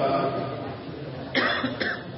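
Two short coughs about a second and a half in, the first the louder, picked up through the microphone.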